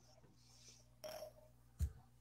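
Quiet pause in a video call: faint steady hum of room tone, with a brief soft sound about a second in and a short low thump near the end.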